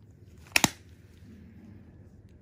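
Two sharp clicks in quick succession about half a second in, over a faint steady low hum.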